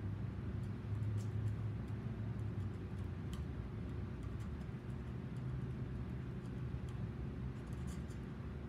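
Faint, scattered scratchy strokes of a paintbrush working acrylic paint, over a steady low room hum.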